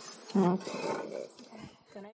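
A person's voice: a short vocal sound starting about a third of a second in, followed by softer voice sounds.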